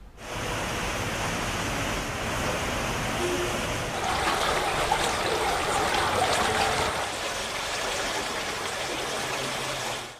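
Steady rush of fast-running floodwater from an overflowing, rain-filled pond, a little louder and fuller from about four seconds in.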